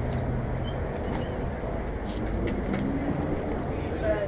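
Steady low outdoor rumble, of the kind street traffic makes, with a few light taps and faint distant voices.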